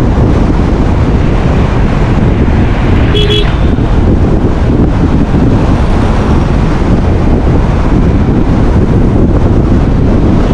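Steady wind and road noise from a Ford Freestyle diesel driving at speed on a concrete highway, with a short beep about three seconds in.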